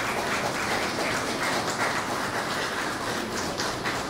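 Audience applauding, a steady clapping of many hands.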